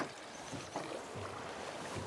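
Faint, steady wash of river current around a drift boat.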